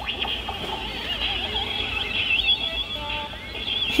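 Animated LED alien Halloween prop, triggered by its button, playing warbling, gliding electronic alien sound effects through its small built-in speaker.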